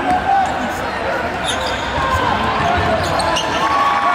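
Live game sound from a basketball arena: a basketball being dribbled on the hardwood court, with the crowd's voices throughout.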